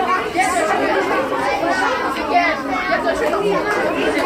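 Many people talking at once: steady overlapping chatter of a group gathered close together, with no single voice standing out.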